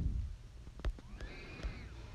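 A man's voice trails off at the end of a word, then a quiet pause of low room sound with a couple of faint clicks.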